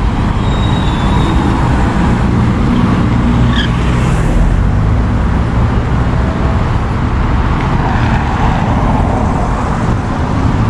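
Steady road traffic on a busy city avenue: cars driving past, with engine hum and tyre noise.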